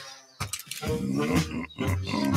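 A cartoon bear's low growling grunts, starting about half a second in after a brief hush.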